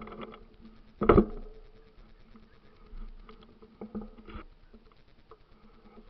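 Mountain bike jolting over a rough, overgrown dirt trail: scattered knocks and rattles, the loudest about a second in and a few smaller ones later, with faint rustling of grass brushing past in between.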